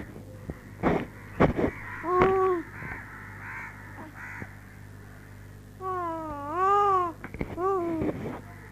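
A baby crying in short, wavering whimpers: a brief cry about two seconds in, and a longer rising-and-falling cry near the end followed by a short one. A few sharp knocks or clicks come about a second in.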